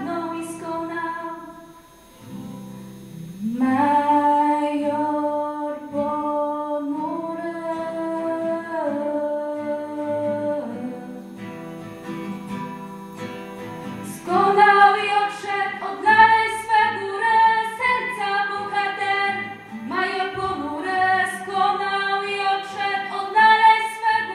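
Singing voices carrying a slow melody with no clear words, over acoustic guitar, caught on a mobile phone. The music grows louder and more rhythmic about fourteen seconds in.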